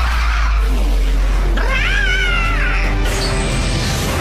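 Dramatic background music over a steady low rumble. About halfway through comes a cartoon creature's high, wavering screech from an animated dragon monster.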